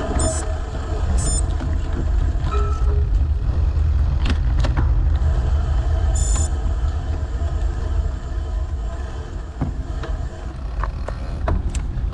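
Steady low rumble of wheels rolling over asphalt under a low-mounted action camera, with wind on the microphone and scattered small knocks from bumps in the road surface.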